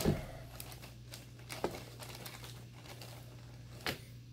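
Plastic bag crinkling and rustling as it is handled, with two sharper clicks: one about one and a half seconds in and a louder one near the end.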